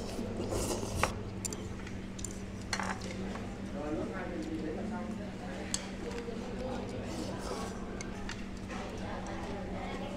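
Chopsticks and spoons clinking now and then against ceramic bowls during a meal, over a steady low hum and faint background voices.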